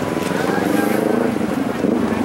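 Outboard engines of several speedboats running as they pull away, a steady wash of motor noise with a wavering drone.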